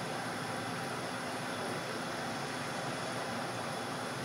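Steady, even hiss of background noise with no distinct sounds in it.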